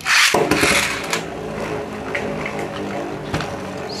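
A Beyblade launched from a cheap red plastic launcher into a plastic stadium: a short, loud rush of noise as it is ripped out and lands, then the top spinning in the stadium with a steady whir and a few light clicks.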